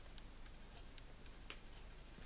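Quiet room tone with a few faint, unevenly spaced ticks.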